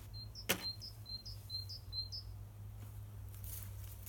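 A small bird calling: a run of about six short, high chirps, roughly two a second, over the first two seconds. A single sharp knock comes about half a second in.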